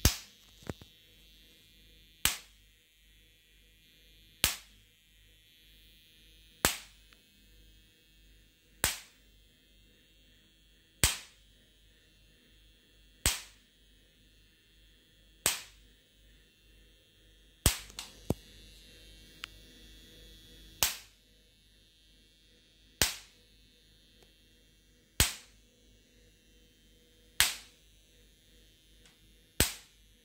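High-voltage sparks from the ignition coil of a homemade 12 V electric fence energizer. Each pulse jumps the output gap as a sharp snap, repeating steadily about every two seconds.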